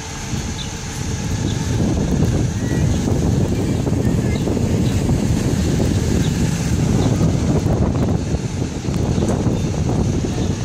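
IC CE school bus moving past close by, its diesel engine running and getting louder about two seconds in, with wind buffeting the microphone.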